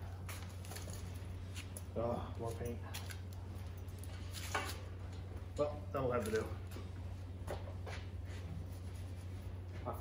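A man's voice speaking in short bursts over a steady low hum in a small workshop room, with a couple of light ticks.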